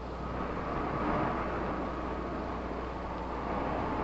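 Steady low rumble and hiss with a constant low hum underneath, and no distinct events.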